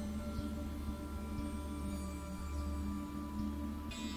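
Soft ambient background music of long, held ringing tones at an even level; a new note rings in near the end.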